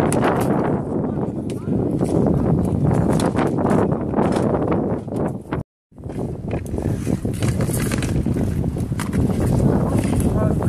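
Wind noise on a phone's microphone mixed with clicks and knocks from roller-hockey sticks, ball or puck, and inline skates on an outdoor rink surface. The sound cuts out for a moment a little past halfway, at an edit.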